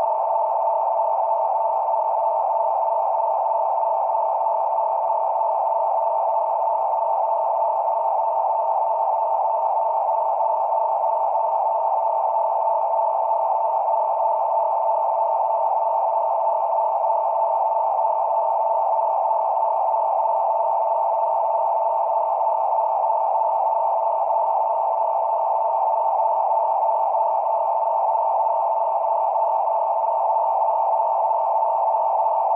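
Steady electronic drone of two close pitches, thin with no bass or treble, holding unchanged without any beat or melody.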